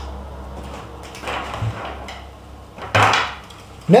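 Gear being handled in a laptop backpack: irregular rustling and a few soft knocks, the loudest a short rustle about three seconds in, over a low steady hum.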